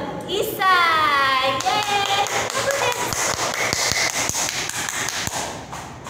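A girl's high voice calls out with a falling pitch about half a second in, then several seconds of quick hand claps and taps with voices mixed in, fading near the end.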